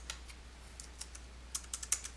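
Faint computer-keyboard keystrokes: a few scattered clicks, then a quick run of about five keystrokes near the end as a number is typed in, over a low steady hum.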